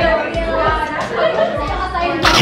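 Indistinct chatter of several voices over background music.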